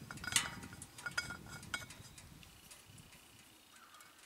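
A few light metallic clicks and clinks as the cap of an aluminium fuel bottle is unscrewed and the bottle is handled, the sharpest about half a second in. After two seconds only faint handling sounds follow.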